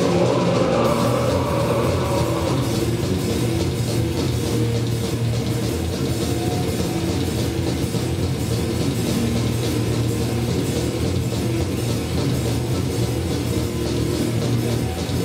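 Crust punk band playing loud and fast live: distorted electric guitars, bass and drum kit.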